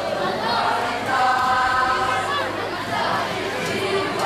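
Boys' choir singing the school march in unison, holding long sustained notes, with the chatter of a crowd underneath.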